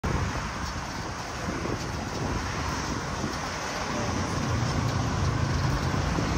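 Road traffic on a busy avenue: a steady wash of passing cars, with a vehicle engine's low hum growing louder in the second half.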